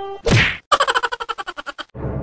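Comedy sound effect: a sudden whack with a falling swoop, followed by a fast, even rattle of pitched strikes, about a dozen a second, that stops abruptly.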